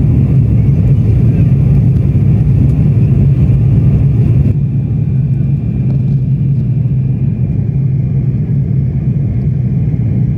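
Jet airliner cabin noise during the climb: a loud, steady rumble of engines and airflow. About halfway through the hiss above it drops away suddenly and the rumble goes on a little quieter.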